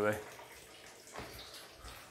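Faint, steady trickle of engine coolant draining from a car's radiator drain, with a soft knock about a second in.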